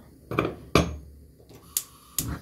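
Sharp clicks of a spark lighter at a gas stove burner that has not yet caught, with a few separate knocks; the loudest comes a little under a second in.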